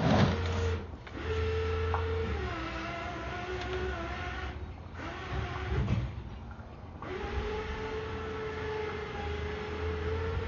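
A small motor whining at a steady pitch over a low hum, in starts and stops. It cuts out briefly about a second in, drops a little in pitch soon after two seconds, falls mostly quiet in the middle, then runs steadily again from about seven seconds.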